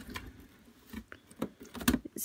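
Scissors cutting the packing tape on a cardboard toy box: a few soft, irregular clicks and scrapes, with a sharper click near the end.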